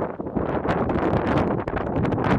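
Wind buffeting the camera's microphone: a loud, gusting rumble that rises and falls.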